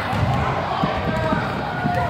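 A basketball bouncing and children's sneakers thumping on a hardwood gym floor as kids scramble for a rebound and run down the court, a few irregular thuds in all.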